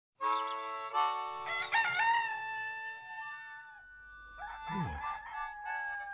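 A rooster crowing, one drawn-out cock-a-doodle-doo lasting about three seconds. A short sound sliding down in pitch follows about five seconds in.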